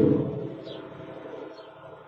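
Ford Mustang's low booming exhaust just after start-up, picked up by a Nest Cam IQ Outdoor's microphone: loud for a moment, then about half a second in it drops almost completely out and stays faint. The camera's noise cancelling is cutting out the engine's low frequencies.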